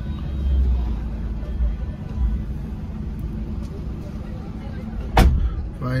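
Low, steady rumble inside a Maruti Suzuki Alto's cabin, its engine idling, with one sharp knock about five seconds in.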